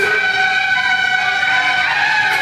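Suona of a beiguan (北管) procession band holding one long, steady high note.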